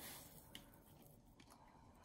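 Near silence: faint room tone, with two faint small clicks as a glass dropper bottle and its dropper cap are handled.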